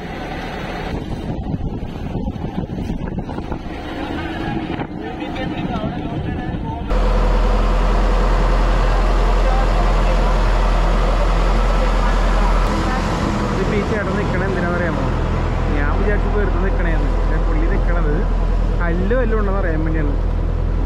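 A small motorboat's engine running steadily, heard loud from about a third of the way in, with people talking over it in the second half.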